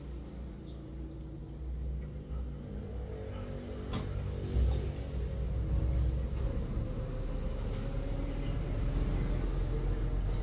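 A motor engine running with a low rumble that grows louder about four seconds in, with a single sharp click about four seconds in.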